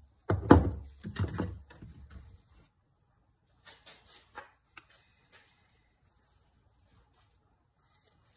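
Handling noise as a compound bow and a metal mount are moved about on a wooden workbench: several heavy thumps and knocks in the first two seconds or so, then a few light clicks and rustles.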